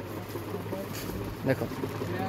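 Low room noise with a faint steady hum, broken by one short spoken word about a second and a half in.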